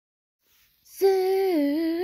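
A high voice singing a held note, starting about a second in after silence; the pitch dips briefly and then comes back up.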